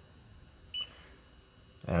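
Handheld dental LED curing light giving one short, high beep about three quarters of a second in, its cure-timer signal.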